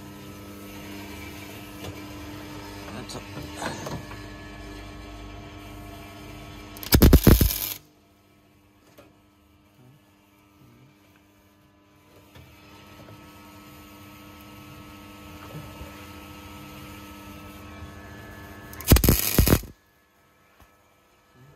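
Two short MIG tack welds, each a loud burst of welding arc lasting under a second, one about seven seconds in and one near the end, tacking a steel turbo flange in place. Between them runs a steady electrical hum.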